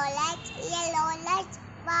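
A little girl singing a traffic-light rhyme: two short sung phrases with held notes and a brief break about one and a half seconds in.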